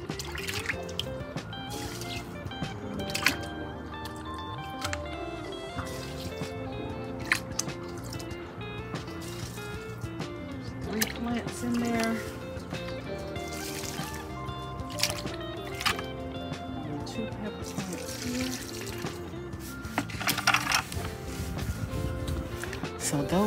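Background music throughout, with liquid fertilizer (a yeast-and-sugar mix) being poured from a container onto potted pepper and okra plants, splashing and trickling into the soil.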